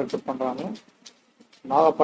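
A man's voice narrating, with a short pause of under a second in the middle.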